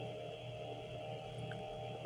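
A faint, steady hum of several held tones that do not change through the pause.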